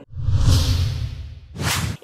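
Title-card transition sound effect: a whoosh over a deep low boom lasting about a second and a half, then a short, bright swish just before the end.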